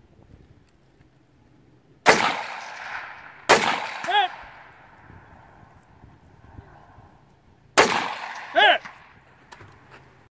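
Three rifle shots from a bipod-rested rifle fired prone: one about two seconds in, another a second and a half later, and a third near the end. Each shot trails off in a ringing echo across the range.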